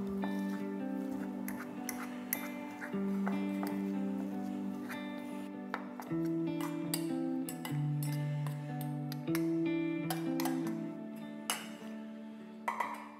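Soft background music of held notes that change every second or so, over a metal fork clicking and scraping against a stainless steel bowl as it mashes firm tofu into crumbles.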